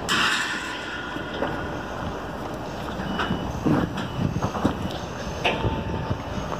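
Outdoor background noise with wind rumbling on a phone microphone, swelling briefly at the start, and a few faint knocks.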